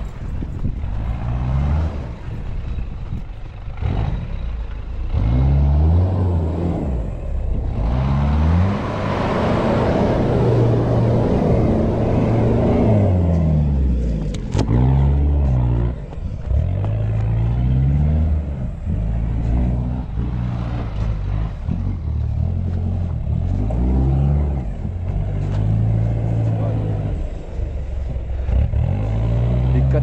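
An off-road 4x4's engine revving up and down over and over under load as it works through a dirt course. A louder rush of noise rises over it from about eight seconds in and fades by about fourteen seconds.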